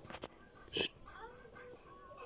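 A single short, breathy puff of air, like a sharp exhale or sniff, about three-quarters of a second in, with a couple of faint clicks just before it.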